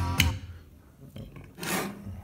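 Music playing through the speakers cuts off just after the start. It is followed by a short rubbing noise about a second and a half in, typical of handling at the equipment.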